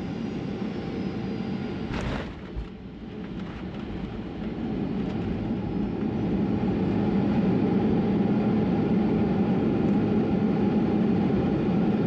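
Cabin noise of a Boeing 737-800 rolling out on the runway after landing. About two seconds in there is a brief burst of noise and a low thump. The CFM56 engines' rumble then builds over a few seconds and holds steady.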